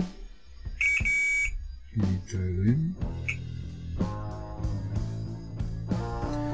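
Guitar music plays in the background. About a second in, a digital multimeter gives a steady high-pitched beep for under a second while its probes are held on a transistor's leads; a brief second beep follows a little after three seconds.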